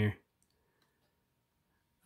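A man's voice trails off at the start, then near silence with a few faint light clicks of trading cards being handled and slid over one another in the hands.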